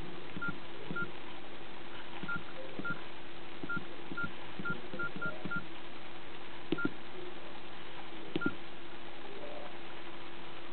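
Nokia E65 keypad tones: about a dozen short, same-pitched beeps at an uneven typing pace as keys are pressed to write a text message, each with a soft key click. Two sharper clicks come near the end.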